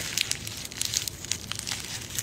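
Irregular crinkling and rustling close to the microphone, a run of small crackles and clicks.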